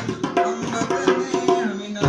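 Dholak drum beats under a melody played on a Roland XPS-10 keyboard, an instrumental passage between sung lines.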